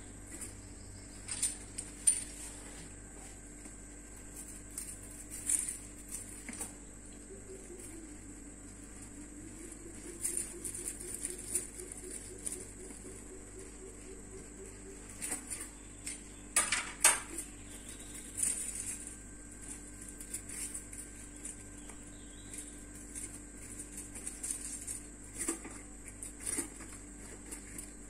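Aluminium foil crinkling and a wheel cutter clicking as a sheet of dried mango leather is peeled off the foil and cut on it: scattered short crackles, with a louder cluster a little past the middle, over a steady low hum.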